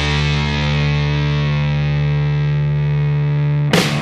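Rock background music: a distorted electric guitar chord is held and rings out, then drums and the full band come back in near the end.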